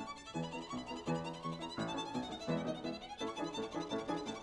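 Solo violin playing a quick run of short bowed notes, with piano accompaniment.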